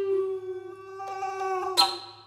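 Bass recorder holding one long wavering note, with a second tone joining it about a second in, then a sharp, breathy attack near the end before it fades.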